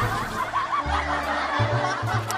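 Laughter over background music with a low bass line that comes in about a second in.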